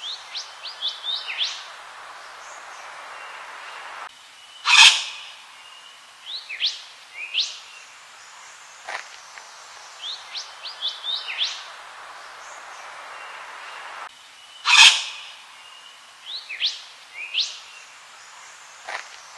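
Yellow wattlebird calling: quick clusters of short, sharply rising whistled notes and, twice, a single loud harsh call, the same sequence coming round again after about ten seconds, over a steady background hiss.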